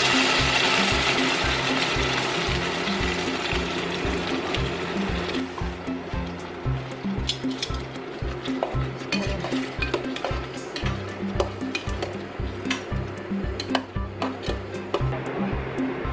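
Background music with a steady bass beat. Over it, tomato pasta sauce sizzles as it is poured into a hot pan of frying meatballs, dying down over the first few seconds. Later come scattered light clicks of metal tongs against the pan.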